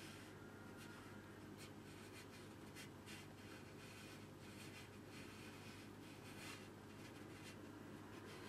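Faint strokes of a wide flat brush on watercolour paper: a run of short, soft scratchy swishes as dark paint is dragged across the paper, over a low steady hum.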